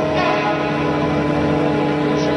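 Orchestral music with strings holding long, steady chords: an instrumental passage of a song, with no voice.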